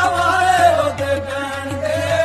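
Punjabi devotional song: a singer holds long, wavering notes over a steady low drone, with light percussion underneath.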